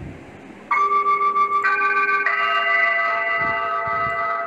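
Soft sustained chords on a keyboard instrument, starting about a second in and changing chord twice, each held steady.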